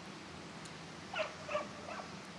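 Three short animal calls in quick succession, over a quiet open-air background.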